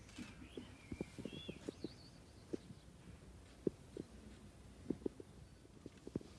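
A crowd standing in silence outdoors: a quiet hush broken by scattered soft knocks and shuffles of feet and clothing, with a few faint high chirps in the first two seconds.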